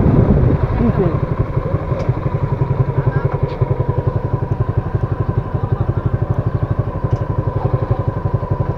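Motorcycle engine idling with an even, rapid beat once the wind rush dies away about half a second in as the bike comes to a stop.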